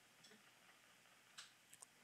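Near silence: room tone with a few faint clicks past the middle.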